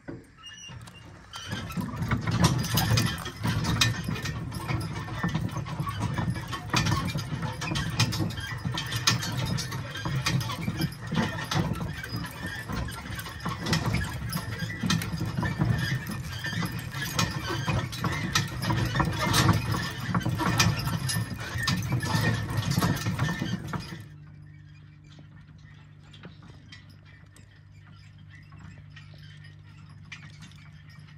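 Team of Percheron draft horses walking in harness, pulling a rig over rough field ground: a loud, continuous clatter of rattling harness and chains, rolling wheels and hooves. It stops abruptly about 24 s in, leaving a quieter, steady low hum.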